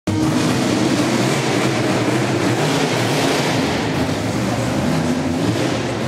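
A car driving fast on a race circuit: its engine running steadily at high speed, with a loud rush of road and wind noise over it.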